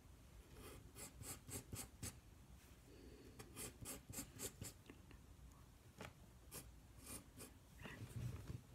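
Faint pencil strokes on paper, drawing short lines in three runs of quick back-and-forth scratches.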